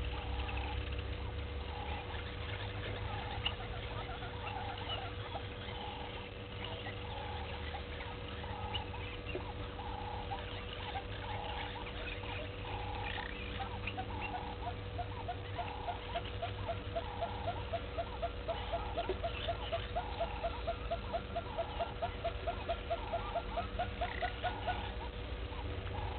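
Outdoor wildlife ambience of animal calls: short calls repeating about once a second, joined about halfway through by a fast run of short rising clicking calls, some four or five a second, over a steady low hum.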